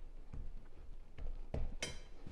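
Soft, dull thuds of hands pressing and patting biscuit dough on a wooden butcher-block board, a few times, with a short sharper sound near the end.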